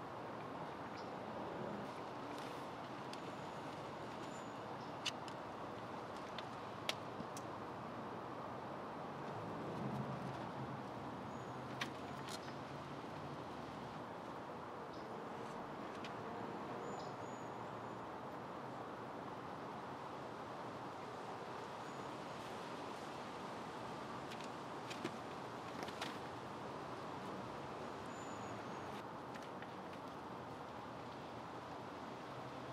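Quiet outdoor ambience: a steady hiss with a few faint sharp clicks scattered through it and several short, faint high bird chirps. A low rumble swells briefly about ten seconds in.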